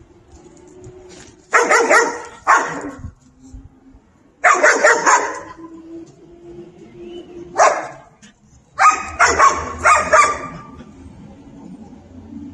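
A dog barking in short, loud bouts: two barks, then a rapid run of barks, a single bark, and a closing burst of several barks.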